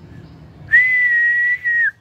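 A person whistling one loud, steady high note that starts less than a second in, breaks briefly near the end and drops in pitch as it stops.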